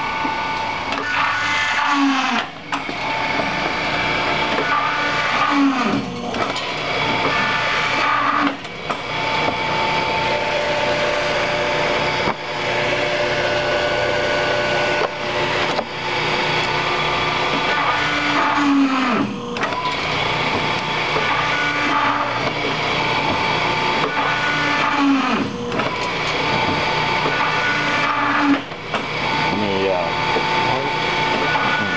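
Challenge EH3A three-head paper drill running steadily with its electric motors humming. Several times the pitch swoops briefly downward as the hollow drill bits are driven through the paper stack.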